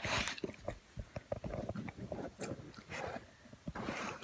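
A dog chewing on something, giving irregular quiet crunches and clicks.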